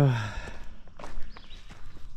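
A man's spoken phrase ends in the first half second. Then a hiker's soft footsteps sound on a dirt and rock trail, with a few faint scuffs.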